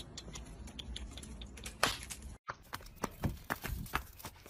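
Irregular light taps and clicks over a low rumble, with a brief dropout about halfway through.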